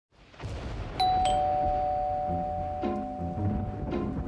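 A two-note ding-dong doorbell chime, a higher note followed a quarter second later by a lower one, both ringing on for a couple of seconds over a low rumble. Past the halfway point, the notes of a cute, spooky Halloween tune come in beneath it.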